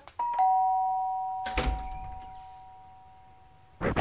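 Doorbell chime ringing a two-note ding-dong, high then low, with the notes fading slowly. There is a single soft thump about a second and a half in.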